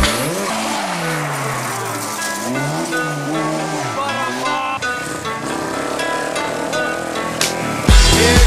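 Rally car engine revving up and down several times in rising and falling sweeps, over the noise of tyres on a loose surface. The engine sound changes character about five seconds in.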